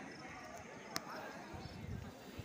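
Indistinct chatter of visitors mixed with footsteps on stone paving, with one sharp click about a second in.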